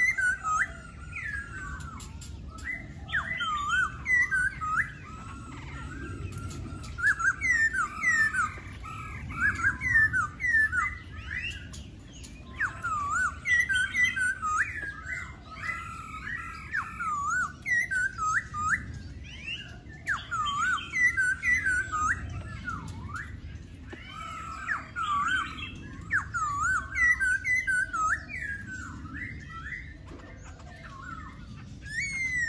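Caged laughingthrush singing: rapid runs of varied, sliding whistled notes in bursts of a few seconds with short pauses between them, over a low steady background rumble.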